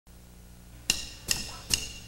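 Drummer's count-in: three sharp drumstick clicks, evenly spaced a little under half a second apart, the first about a second in, over a faint low hum.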